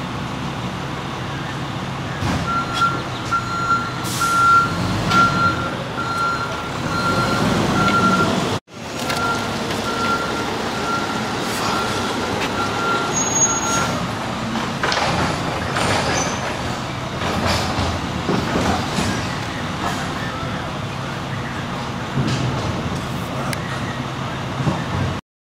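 A truck's reversing alarm beeping steadily at one pitch, about twice a second, over engine rumble; the beeping stops a little past halfway.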